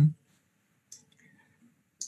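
A pause in a man's speech: his last syllable fades out just after the start, then near silence broken by one short, faint click about a second in.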